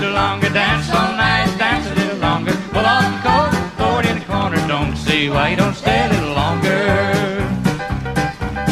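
Live country band playing an instrumental break in western swing style: a lead melody line with vibrato over rhythm guitar, bass and a steady beat.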